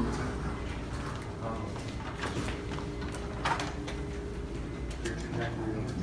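A steady low hum with faint voices murmuring over it.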